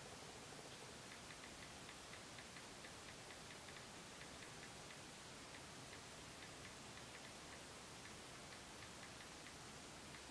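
Faint, irregular ticks of a smartphone's keyboard as a message is typed with the thumbs, over near-silent room tone.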